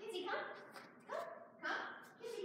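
A young Blue Heeler mix giving a few short barks and yips, mixed with a woman's voice.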